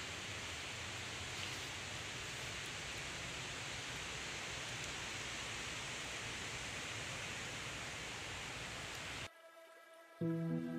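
Steady hiss of running water. It cuts off suddenly near the end, leaving near silence with faint music tones starting.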